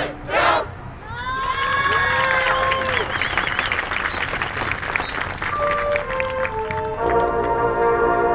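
Audience cheering and whooping with applause during a pause in a marching band show. A few held single notes come in, and then the full band returns with sustained brass chords about a second before the end.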